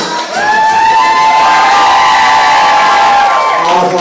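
Crowd cheering at the end of a karaoke song, with a long high whoop that rises about half a second in, holds for about three seconds and falls away near the end.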